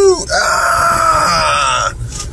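Car tyres squealing through a tight hairpin turn taken fast: one steady high squeal of about a second and a half that cuts off suddenly.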